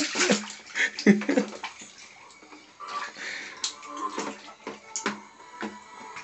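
Water splashing and sloshing in a plastic baby bathtub as a baby slaps at it and pushes a toy duck about, in a string of sharp splashes that are loudest at the start and about a second in, then smaller. Music plays faintly underneath.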